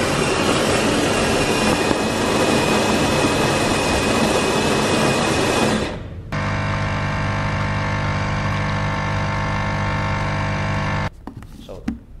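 A Jura Impressa XF50 bean-to-cup coffee machine grinds beans for about six seconds. After a brief pause, its pump runs with a steady hum for about five seconds as the coffee is brewed into the cup, then cuts off suddenly.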